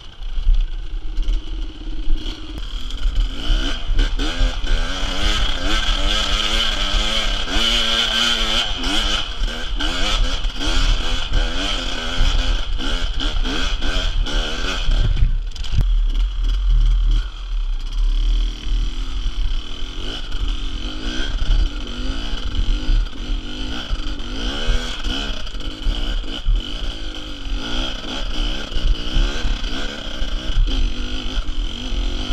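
Enduro motorcycle engine revving up and down in pitch as the bike climbs over rough, rocky ground, with clattering and a low rumble of wind on a helmet-mounted microphone.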